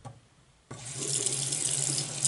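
Bathroom tap turned on about a third of the way in, water running steadily from the faucet with a low pipe hum under the rush.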